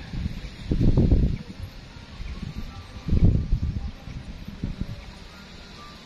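Wind buffeting the microphone: two loud low rumbles, about a second in and again about three seconds in, with smaller gusts after them.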